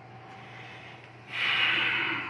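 A man takes one loud breath close to the microphone, a hissing rush of air starting a little past halfway and lasting about a second, with his hand at his mouth and nose. Before it there is only faint room hum.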